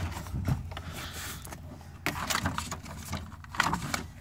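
Scattered light knocks, clicks and rustles of a plastic pickup door trim panel being handled and lined up against the door, in small clusters a little after the start, about two seconds in and near the end.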